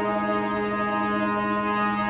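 Trumpet playing long sustained notes over an unbroken low droning tone that holds steady throughout.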